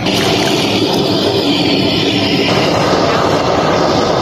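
Gas blowtorch flame running loud and steady as it singes the hair off a cow's head, the sound getting fuller about halfway through.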